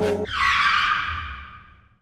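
Electronic intro music with bass notes sliding down stops a moment in, and a skid-like screeching sound effect takes over, fading out over about a second and a half.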